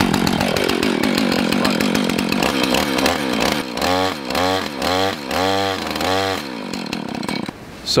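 A two-stroke Husqvarna chainsaw runs with its chain binding in the bar, where burred drive links won't seat. The engine is revved up and down about five times in quick succession midway, labouring against the stuck chain, then drops away near the end.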